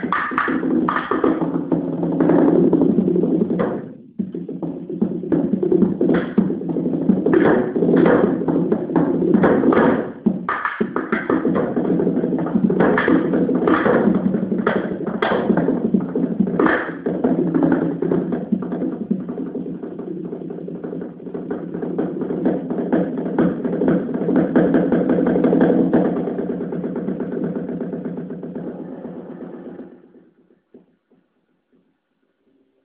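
Solo percussion on a drum kit: a dense, fast run of drum strokes with accented hits standing out, broken briefly about four and about ten seconds in, and fading away near the end. Recorded on a camera phone, so the sound is thin at the top.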